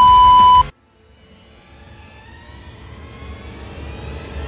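Loud, steady test-tone beep of the kind laid under colour bars, lasting under a second and cutting off abruptly. After a moment of silence, a soft rising musical swell slowly grows louder.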